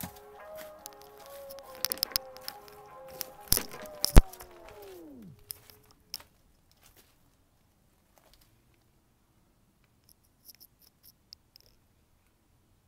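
Background music with a few sharp clicks. About five seconds in it winds down, its pitch sliding lower like a tape slowing to a stop, and is followed by near silence with a few faint ticks near the end.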